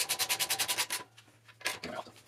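A socket wrench ratcheting rapidly, about a dozen quick even clicks for roughly a second, then a few scattered handling knocks as the rear shock is bolted back onto the swing arm.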